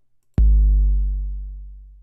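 A long 808-style kick drum sample played once about half a second in: a deep boom that fades out slowly over about a second and a half.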